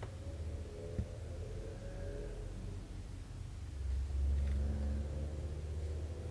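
A low, steady rumble with a faint hum, swelling louder about four seconds in and easing off again, with a single faint tick about a second in.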